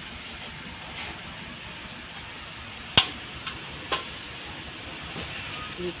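Aluminium wok set down on a stove top: one sharp clank about halfway through, then two lighter knocks.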